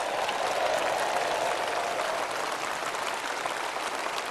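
A large audience applauding, with cheering voices swelling in the first two seconds.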